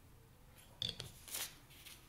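Plastic screw cap put back on a small bottle of plastic weld solvent cement: a sharp click a little under a second in, then a short scraping twist as it is screwed shut.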